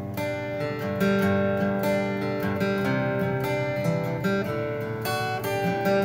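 Acoustic guitar strummed in a steady rhythm, changing chords every second or so: an instrumental rendition of a popular song.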